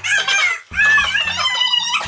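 High-pitched cackling laughter in two bursts, with a short break between them, over background music.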